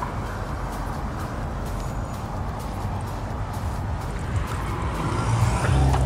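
Steady low rumble of street traffic, with a car's engine growing louder near the end as it comes up close.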